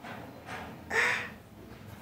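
A woman's short, breathy laugh of surprised delight, one burst about a second in.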